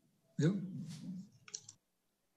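A single short spoken word, then a quick cluster of a few sharp clicks about one and a half seconds in.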